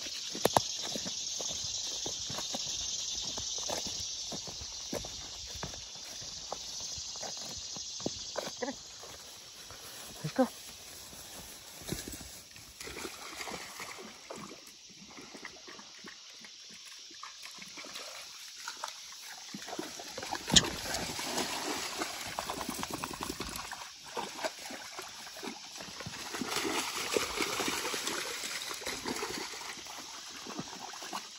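Footsteps crunching over twigs and brush on a trail for the first several seconds, then a dog wading through a shallow creek, the water sloshing and splashing around its legs, loudest in the last third. One sharp crack stands out a little after the middle.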